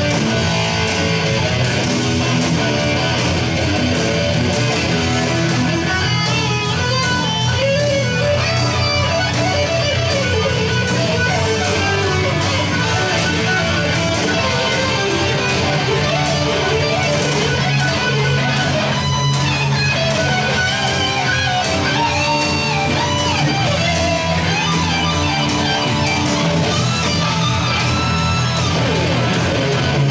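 Electric guitar played live as a continuous lead line, with bent, sliding notes, over a steady sustained low part.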